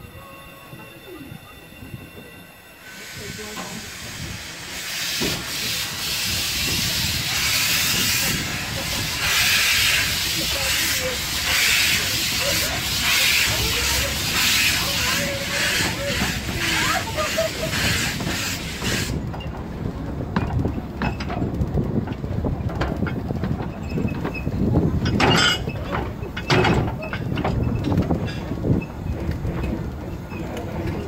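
Decauville 0-4-0 narrow-gauge steam locomotive on the move, heard from its footplate. A loud steam hiss starts a few seconds in and cuts off suddenly a little past halfway, leaving the engine's rumbling running noise and rattle, with one sharp knock near the end.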